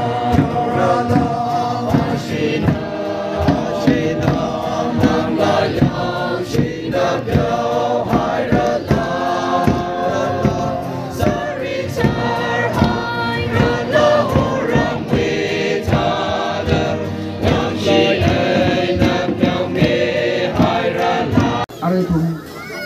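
A crowd of men and women singing a hymn together as they march, with a drum beating along. The singing breaks off near the end.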